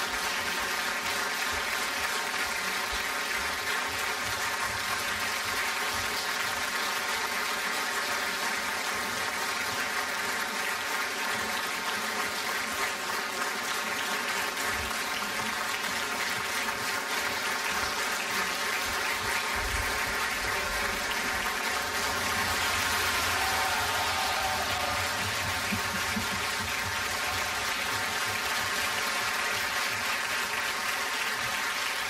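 Theatre audience applauding steadily during the curtain call, swelling a little past the middle.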